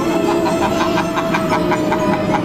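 Haunted-house dark ride's soundtrack: a held low note under a quick run of repeated high chime-like notes, about six a second, starting about half a second in.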